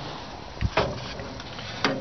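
A dull thump and a few sharp knocks as a transmission differential, a heavy steel unit, is handled and set on a cardboard-covered bench.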